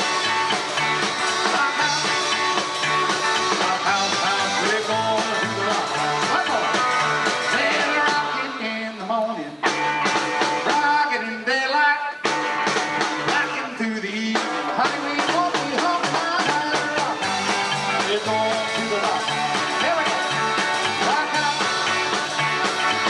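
Live rock and roll band playing a song, with electric guitar and drum kit.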